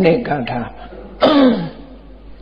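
Speech: a man's voice in two short phrases with a brief pause between, the second ending in a falling pitch.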